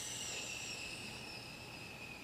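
Faint high hiss with thin steady whine tones in it, slowly fading.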